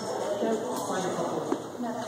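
Indistinct voices of people talking in a large hall, with one sharp click about one and a half seconds in.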